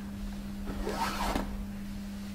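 A shoelace drawn through the eyelets of a shoe: one brief rasping swish of about half a second, around a second in.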